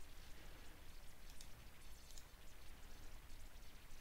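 Quiet room tone with a steady low hum and two or three faint clicks of a computer mouse.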